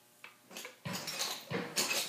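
Metal taps on clogging shoes clicking a few times at irregular intervals on a hardwood floor, starting about half a second in and coming closer together near the end.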